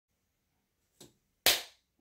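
A single sharp hand clap about a second and a half in, after a faint click.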